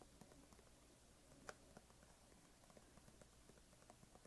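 Near silence: room tone with a few faint soft clicks, one a little clearer about a second and a half in.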